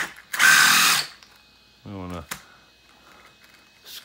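Brushless motor of a 1:14-scale 4x4 RC buggy given a short burst of throttle, spinning the drivetrain and wheels up loudly for under a second before cutting off. A brief vocal sound follows a second later.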